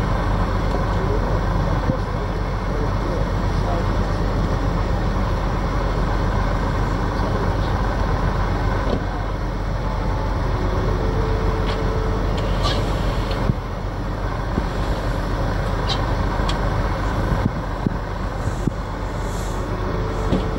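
Steady low rumble of engines or machinery, with faint voices in the background.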